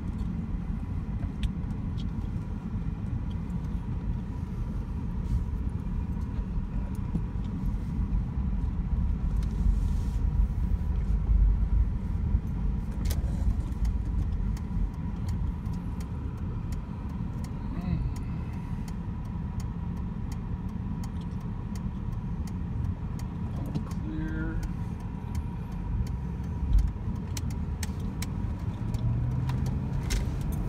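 Cabin sound of a 1995 Lincoln Town Car on the move, heard from the driver's seat: a steady low rumble of engine and tyres on the road, with scattered light clicks. A low note rises near the end.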